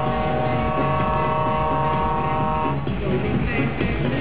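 A truck's multi-tone air horn holds one steady chord and cuts off just under three seconds in, over loud music.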